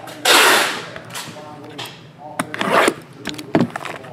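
Trading cards and a shrink-wrapped card box handled on a padded tabletop: a loud sliding swish about a quarter second in, then light taps and clicks.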